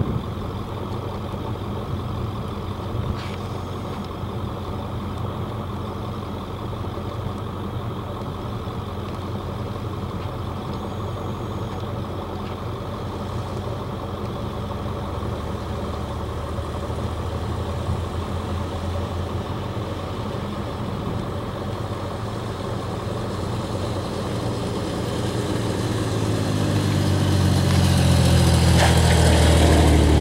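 A vehicle engine idling with a steady low hum, then getting louder and rising in pitch over the last few seconds as it speeds up.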